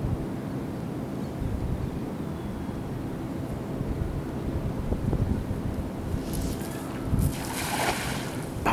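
Wind buffeting the microphone with a steady low rumble, then near the end a short hissing splash as a thrown cast net lands on the water.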